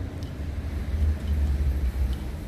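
Low rumble of engines and machinery in an underground car park, growing louder between about one and two seconds in.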